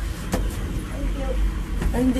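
Steady low rumble of a moving cable car cabin, with two sharp knocks, one shortly after the start and one near the end.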